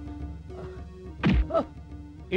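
A dubbed film-fight punch effect: one heavy thud a little past halfway, over background music with sustained held notes.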